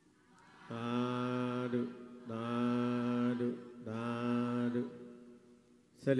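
A Buddhist monk chanting in a man's voice: three long held phrases at one steady pitch, each about a second, starting just under a second in.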